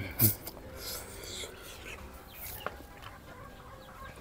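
A short noodle slurp just after the start, then quieter chewing and mouth sounds from a person eating, with one small click partway through.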